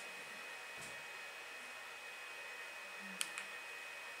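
Steady faint hiss of a projector's cooling fan with a thin high whine, and one small click a little after three seconds in.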